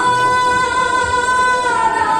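A voice singing one long held high note in Assamese Bhaona devotional style, the pitch dipping slightly near the end.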